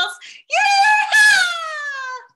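A woman's excited, joyful yell: one long, loud cry that falls in pitch.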